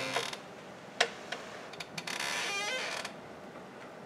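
Handling noise at a lectern laptop: two sharp clicks about a second apart, then a creak lasting about a second that rises in pitch in small steps.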